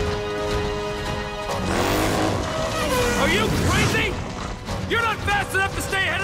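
Action-chase music from an animated series' soundtrack: a held chord, then swooping, sliding tones, and from about five seconds in a quick run of short arching notes, several a second.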